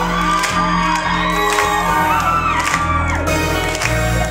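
Live rock band playing loud through a club PA: electric guitars, bass and drums, with the crowd whooping and cheering over the music.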